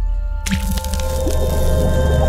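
Logo sting: music over a deep bass drone, with a wet splat sound effect about half a second in, as the orange paint-drop logo lands.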